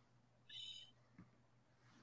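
Near silence: faint room tone with a low hum, broken once about half a second in by a brief, faint, high-pitched sound.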